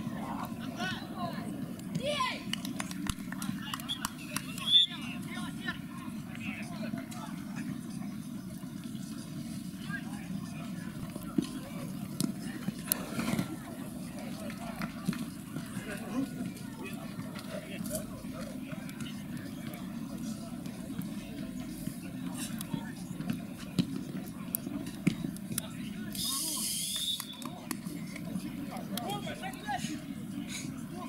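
Sound of an outdoor mini-football match: players' indistinct shouts and calls over a steady low background rumble, with scattered sharp knocks of the ball being kicked.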